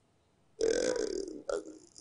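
A short silence, then about half a second in a man makes a brief low, rough vocal sound in his throat, like a drawn-out hesitation 'ehh', with a little breath noise, followed by a short blip just before his speech resumes.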